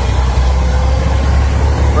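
Heavy truck's diesel engine running steadily, a deep low rumble heard from inside the cab.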